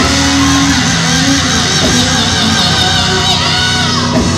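Live gospel quartet music: the band plays loudly and steadily with sustained, wavering sung notes over it.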